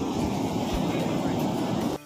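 Steady outdoor background noise with a low rumble, which sounds like wind on the microphone, and a murmur of visitors' voices. It stops abruptly at the very end.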